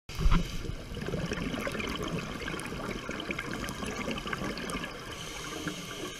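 Underwater water noise picked up through a diving camera: a steady bubbling, crackling wash with many small clicks, and a thump just after the start.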